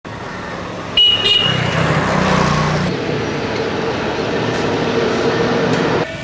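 Road traffic noise with a motor vehicle's engine passing, and a short horn toot about a second in.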